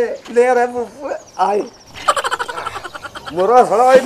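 A person's voice making loud, wordless, wavering cries, with a fast rattling stretch about two seconds in.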